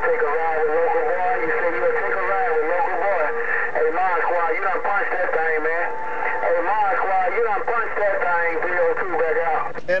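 Another station's voice coming through an HR2510 radio tuned to 27.085 MHz. The audio is narrow and tinny and the words are too garbled to make out. The transmission cuts out just before the end.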